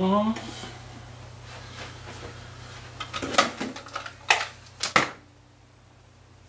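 Handling noise on a workbench: a cluster of sharp clicks and knocks in the second half, the loudest three about a second apart, as tools and guitar hardware are picked up and set down.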